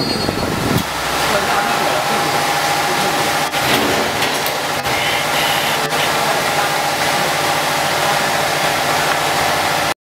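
Automatic food packaging machinery running steadily, a continuous motor hum with a few sharp mechanical clicks in the middle.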